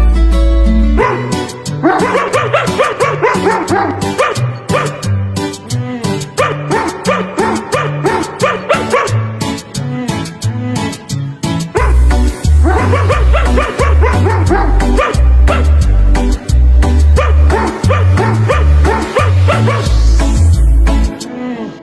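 A pop song plays while a dog howls along in wavering, pitched cries. The song's heavy bass beat stops about a second in and comes back past the halfway point.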